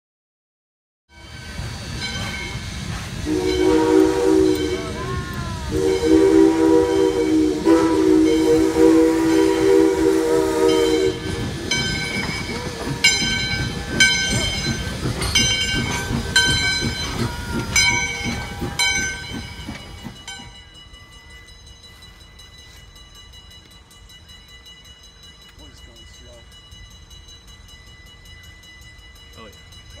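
Steam locomotive whistle blowing two long chime blasts, the second much longer, over the noise of the train. Then the locomotive's bell rings in steady strokes, about one to two a second. About two-thirds of the way through, the sound drops to a much quieter background.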